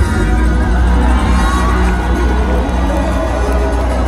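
Loud live soul-pop band music with a heavy bass that comes in abruptly at the start, and a crowd cheering over it.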